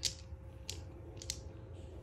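Three light clicks and taps as a bank of aluminium-housed wirewound resistors strung on bare copper wire is handled on the bench. The first click is the loudest.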